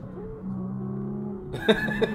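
Porsche sports car engine running at steady, unchanging revs under way at highway speed, heard from inside the car. A brief louder noise comes near the end.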